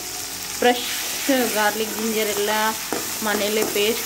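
Sliced onions and masala sizzling in hot oil in a pan while a metal spoon stirs them. A person's voice sounds over the sizzle in several drawn-out phrases.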